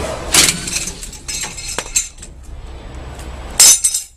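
Metal tools and suspension hardware clanking and clinking, with two loud, sharp clanks: one about a third of a second in and one near the end.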